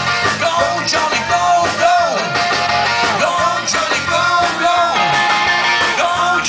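Live rock cover band playing: electric guitars and drums. A lead melody rises and falls in pitch about once a second over the beat.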